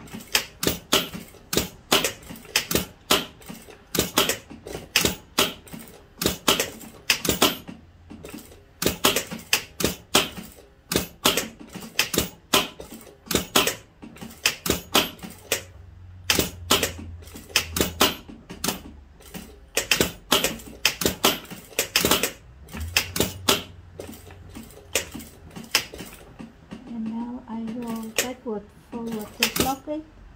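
Straight-stitch sewing machine sewing short, closely spaced stitches for a buttonhole in stop-start spurts: the needle mechanism clicks a few times a second with uneven pauses, and a low motor hum comes in twice.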